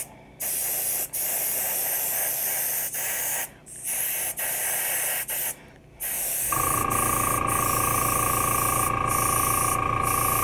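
Airbrush spraying metallic green paint in a steady hiss, broken by three short pauses where the trigger is let off. About six and a half seconds in the hiss stops and a steady motor hum with a high whine takes over.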